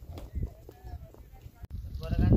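Faint voices with a few soft low knocks, broken by a sudden cut near the end.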